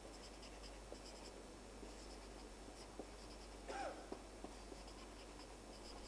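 Felt-tip permanent marker writing on paper: faint, scratchy pen strokes with small ticks, and one brief louder note a little before four seconds in.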